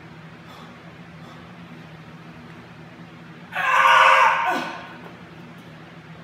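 A man's loud, strained vocal grunt of effort lasting about a second, a little past halfway in, from a lifter straining under a heavy barbell on a back squat. A steady low hum sits underneath.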